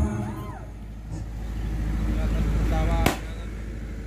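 A low rumbling noise that swells and then stops, with a single sharp bang about three seconds in: the warning firecracker set off on a raised pole.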